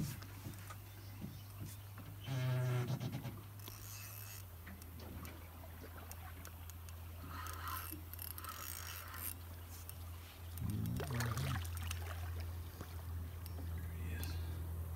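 Steady low hum of an idling boat motor, dropping slightly in pitch about four and a half seconds in, with two short voiced grunts or exclamations, one near three seconds in and one near eleven.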